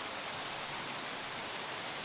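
Small waterfall and stream rushing steadily over rocks.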